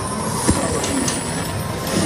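Loud, dense casino-floor din with slot machine sounds, and a sharp knock about half a second in, as a Fu Dao Le slot machine triggers its bonus feature.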